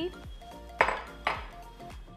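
Two sharp glass clinks about half a second apart, near the middle: a glass bowl being set down against glassware or the worktop, over steady background music.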